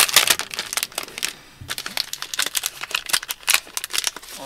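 Shiny foil packet crinkling and crackling as it is handled and turned over in the hands, with a brief lull about a second and a half in.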